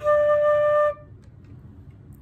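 A metal concert flute sounding one clear, steady note, held just under a second before stopping. The airstream is fast enough to make the note speak, but the pitch is way out of tune.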